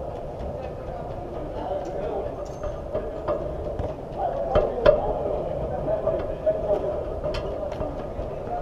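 Indoor five-a-side football play: players' distant calls over a steady background hum, with a few sharp ball kicks around the middle and near the end.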